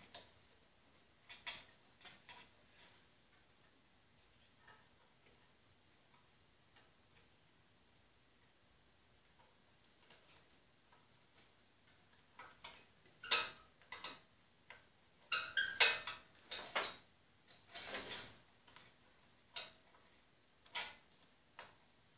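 A rubber cover being worked by hand onto the painted metal front end of a Snapper rear-engine riding mower: scattered short squeaks and clicks as the rubber is stretched and slips on the metal. It is almost silent for the first half, then busier, with one higher squeak near the end.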